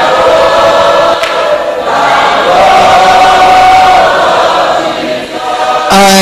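Church congregation singing together, many voices in unison with long held notes, one held for over a second in the middle.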